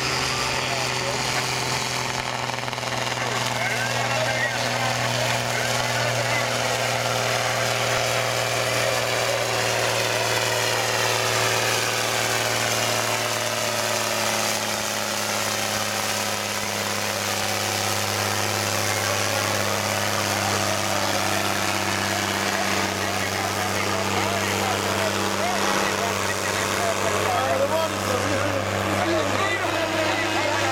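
Case 1455 tractor's diesel engine running hard under load as it pulls a weight-transfer sled down the track, a steady drone whose pitch drifts only slightly. Voices of onlookers are heard under it.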